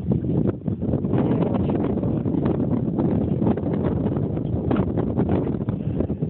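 Wind buffeting a phone's microphone: a loud, steady rush with frequent irregular crackles.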